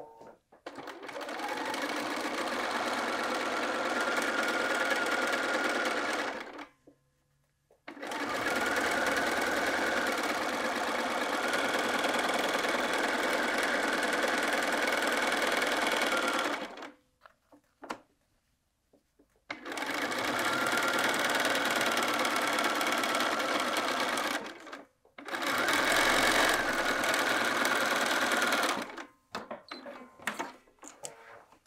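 Bernina computerized sewing machine with a walking foot, stitching straight quilting lines through fabric and batting. It runs at a steady speed in four stretches of several seconds each, stopping briefly between them.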